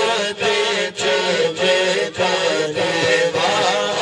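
A man singing a naat, an Urdu devotional poem, solo into a microphone, in a chanting style with long melodic phrases.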